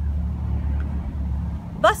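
A steady low rumble fills a pause in speech, and a woman's voice comes in near the end.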